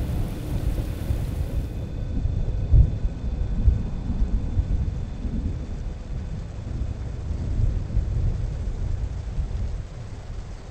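A deep, uneven rumble, like distant thunder, with a few faint high tones held above it from about two seconds in.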